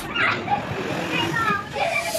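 Indistinct chatter and calls of children playing in a busy play hall, with a couple of short high calls about a second and a half in.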